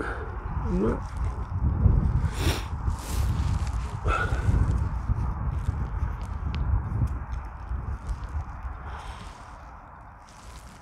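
Low, gusting rumble of wind buffeting the microphone, loudest in the middle and easing off near the end. A short murmur of voice about a second in and a couple of brief sharp knocks a little later.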